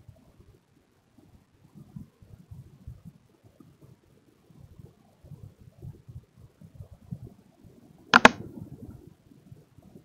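Quiet background with faint, irregular low rumbling and one sharp click about eight seconds in.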